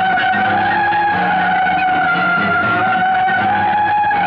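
Film song music: a single high note is held for about four seconds over a bass and rhythm accompaniment.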